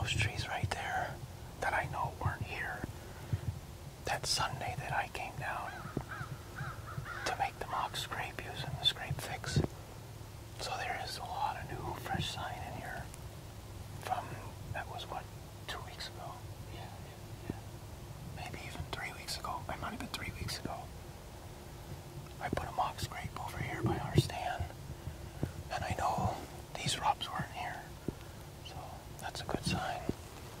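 Whispered speech in short, hushed stretches, with a few sharp clicks in between.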